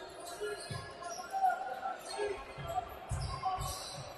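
Basketball bouncing on a hardwood court: a dribble about a second in, then a quicker run of three or four bounces near the end.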